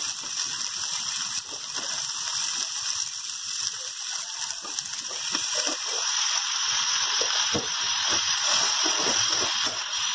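Onions, chillies and dal sizzling in hot oil in a kadai, with a metal spatula scraping and stirring them in short strokes. About six seconds in, once tomato wedges are in the pan, the sizzle gets louder.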